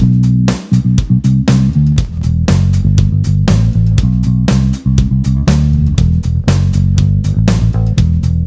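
Electric bass played with a clean tone: a continuous line of sharply plucked notes with a strong low end. It is heard first through an sE VR1 ribbon mic on an Aguilar DB 210 cabinet, then through an Origin Effects BassRig Super Vintage DI preamp a few seconds in.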